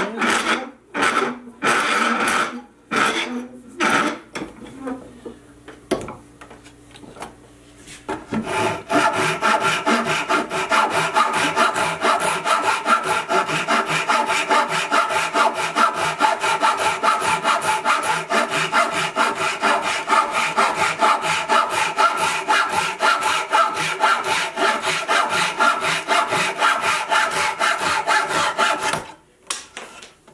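Japanese pull saw cutting wood, trimming protruding board ends flush. A few separate strokes, a pause of a few seconds, then fast, steady sawing at about five strokes a second that stops about a second before the end.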